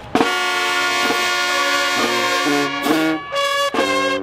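Marching band brass section coming in loudly all at once just after the start, playing held chords of trumpets and trombones that shift every second or so, with a couple of brief breaks near the end.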